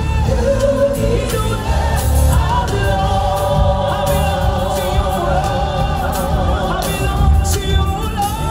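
A gospel choir singing live with a lead singer, amplified through a PA, over a heavy bass accompaniment; the voices hold long sustained notes through the middle.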